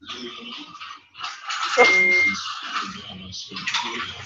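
Voices talking over a video-conference call, with a short steady beep about two seconds in.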